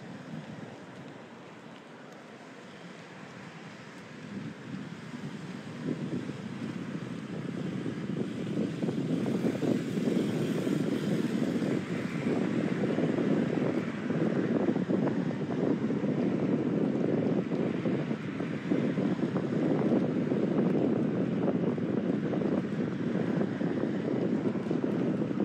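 Wind buffeting a phone's microphone on a moving bicycle, a rough rumble that grows louder over the first eight seconds or so and then holds steady.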